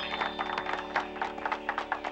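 A small group applauding, with irregular hand claps over steady background music.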